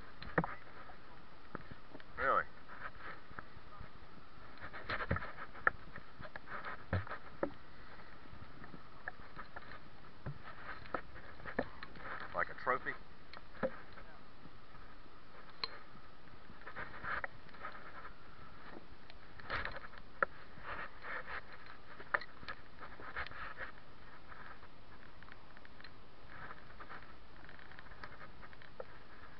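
River water moving around a wading angler's legs: a steady hiss of water with scattered short splashes and knocks every few seconds.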